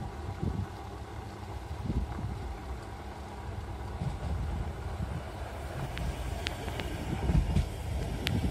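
Funicular car running along its rails as it approaches and passes close by. A low, steady rumble that grows louder near the end, with a few sharp clicks.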